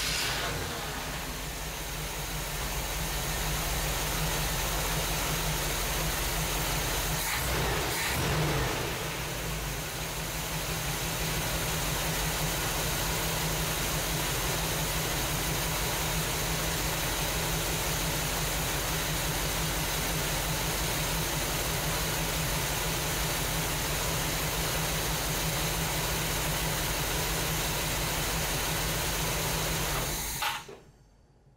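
1969 Chevrolet C10's 350 small-block V8 starting warm and settling into a steady idle, with a brief rise in revs about eight seconds in.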